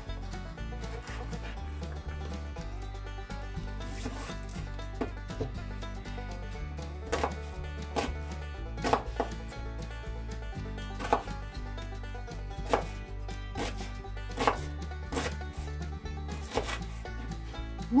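Kitchen knife chopping carrot and onion on a plastic cutting board, sharp single strokes at an uneven pace of roughly one a second, over background music.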